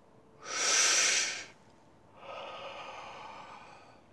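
A man smoking a joint: a loud, hissing drag of about a second, then after a short pause a longer, quieter breath out of the smoke.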